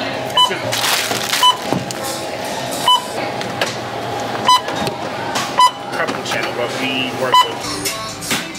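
Checkout barcode scanner beeping as grocery items are scanned one after another: six short beeps of the same tone, at uneven gaps of one to two seconds.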